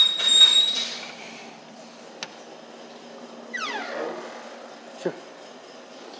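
A door being opened and let swing shut: a loud rustle of handling and air as it opens, a falling squeak about three and a half seconds in, and a short thump about five seconds in as it closes, over a low steady hum.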